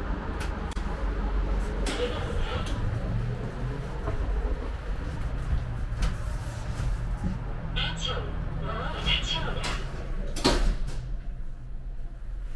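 Elevator doors sliding and the elevator's steady low hum, with scattered clicks and metallic knocks and one sharp, loud knock about ten and a half seconds in.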